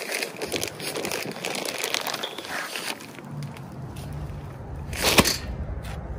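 Plastic potting-mix bags crinkling and crackling as they are handled, with many small sharp crackles in the first few seconds. A single loud knock comes about five seconds in.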